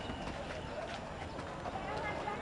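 Busy street background: distant voices and general street noise, with a few faint knocks.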